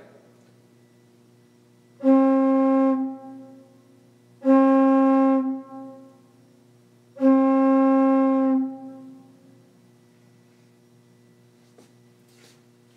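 A single open metal flue pipe from an organ's Prestant 8' principal stop, blown by mouth through its foot: three steady notes at the same pitch, each a second or so long, with a brief ring-off after each.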